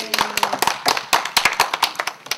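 A small group of people applauding: quick, irregular, overlapping hand claps.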